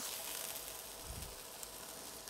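Chicken breast fillets frying faintly in oil in a non-stick pan, a soft, even sizzle with the heat turned down for slower cooking.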